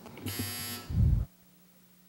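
A short electronic buzz lasting about half a second, followed by a brief low sound, then the audio cuts out to dead silence.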